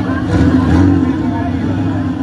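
Low steady engine hum of an older-model convertible car creeping slowly past, mixed with voices of people chatting close by.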